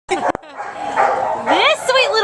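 A small dog, a miniature poodle–Bedlington terrier mix, barking.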